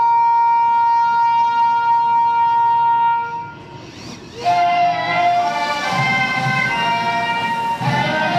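Ceremonial brass music during a flag raising: a horn holds one long high note for about three and a half seconds and fades. After a short break, fuller band music starts up with several notes sounding together.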